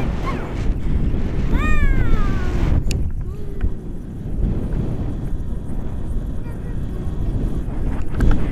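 Wind rushing over the microphone of a camera carried on a tandem paraglider in flight, a steady, loud rumble. About two seconds in, the young passenger gives a short high-pitched cry that falls in pitch.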